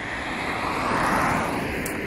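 A car passing by on the road: a rush of tyre and engine noise that swells to its loudest about a second in and then fades.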